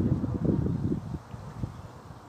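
Wind buffeting the phone's microphone: a gusty low rumble that is strongest for the first second, then eases off.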